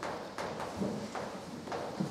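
Chalk writing on a blackboard: a quick series of sharp taps and short scratches, about six strokes, as a word is written.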